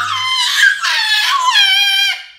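A young child's long, high-pitched squeal, wavering in pitch with a couple of short breaks. It fades out at the very end.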